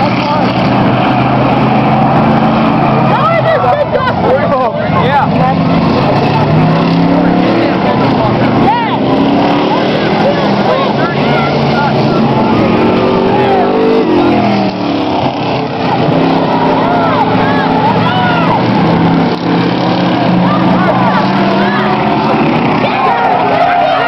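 Several full-size pickup trucks racing around an asphalt track, their V8 engines revving loudly, with overlapping engine notes that climb and fall in pitch as the trucks accelerate and pass. One passes close about midway through.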